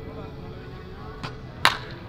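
A baseball bat striking a pitched ball in a batting cage: one sharp, loud crack about one and a half seconds in, with a fainter click just before it.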